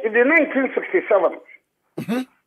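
Speech only: a voice with a narrow, telephone-like sound, breaking off about one and a half seconds in.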